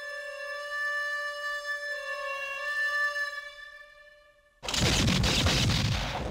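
Harmonica holding one long, wailing note that shifts slightly about two seconds in and fades away. Near the end a sudden loud, dense chord crashes in.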